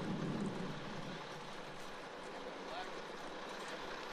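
A running engine, heard as steady background noise that eases slightly over the first two seconds and then holds.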